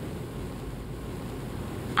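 A steady, even background hiss of room tone with no distinct sound in it.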